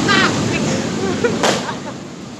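New Year's fireworks and firecrackers going off all around in a dense, continuous crackle of bangs, with one sharp, loud bang about one and a half seconds in.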